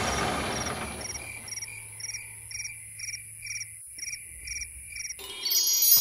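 Cartoon cricket sound effect: short, high chirps at an even pace of about two a second, as the last of the music fades out. Near the end a bright, sparkling chime sweep comes in.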